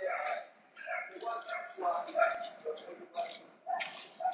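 Indistinct talking in short broken phrases.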